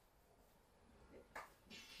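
Near silence: room tone, with one brief faint sound about one and a half seconds in.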